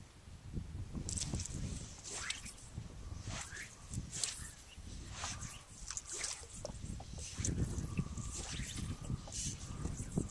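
Fly line and rod swishing through the air in a run of repeated whooshes as a fly cast is worked back and forth, over a low rumble of wind on the microphone.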